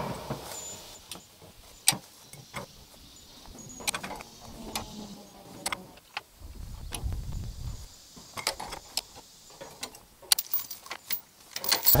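Steel farm jack being worked by its lever: scattered sharp metallic clicks as its pins come out of and drop into the holes of the bar, with a quick run of clicks near the end. A low rumble runs for a second or two past the middle.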